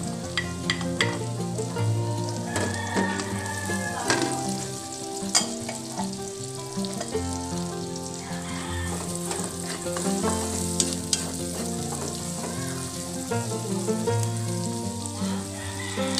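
Garlic and onion frying in oil in an aluminium wok, a steady sizzle, with a wooden spatula stirring and scraping and occasional sharp knocks against the pan.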